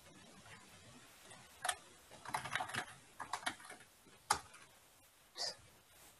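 Typing on a computer keyboard: faint keystroke clicks in short irregular bursts, starting a little under two seconds in.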